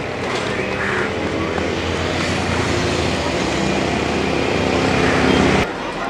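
A motor vehicle's engine running nearby, growing gradually louder, cut off abruptly about five and a half seconds in.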